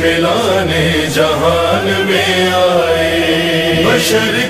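A male voice sings a manqabat line drawn out in a long melisma, its pitch wavering and gliding, over a steady low hummed drone.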